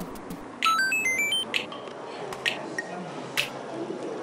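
A quick run of short electronic beeps climbing in pitch, over background music with a sharp tick about once a second.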